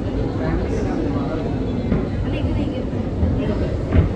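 Indistinct voices of people talking in a room over a steady low rumble.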